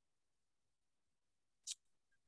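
Near silence, with one short, sharp click about three quarters of the way through.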